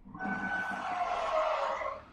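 A vehicle driving past in the film's soundtrack: a rushing noise with a tone that slides slowly down in pitch, cutting off just before the end.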